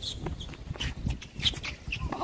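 Tennis rally on a hard court: a few short, sharp knocks of racket strikes and ball bounces, with brief high squeaks, over a steady low rumble.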